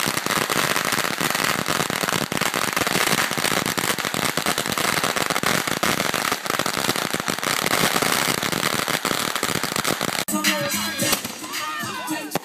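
Ground fireworks going off in a fast, continuous crackle of dense pops. It cuts off abruptly about ten seconds in.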